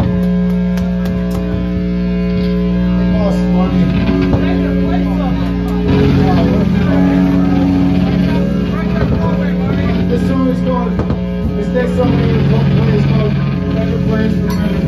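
A live band's electric guitar and bass playing long held notes through amplifiers, the notes changing every few seconds, with crowd chatter underneath.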